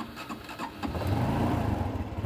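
Honda Wave motorcycle's single-cylinder four-stroke engine being turned over by its electric starter, catching about a second in and running. The battery, just recharged, now has enough charge to crank the engine, which it could not do before.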